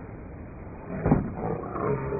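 A man's loud, wordless yell that breaks out suddenly about halfway in.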